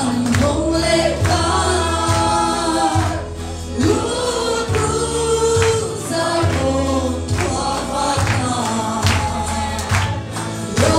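A woman singing a gospel song solo into a microphone, over accompaniment with a bass line that moves every second or so and a regular beat.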